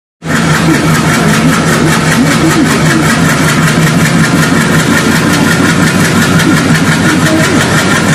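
Diesel locomotive engine running loud and steady with a fast, even pulse, working hard enough to throw heavy black exhaust smoke.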